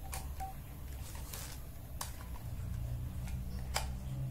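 Plastic pens clicking against each other as they are pushed one by one into a rubber-band bundle: four or five sharp, separate clicks over a low steady hum.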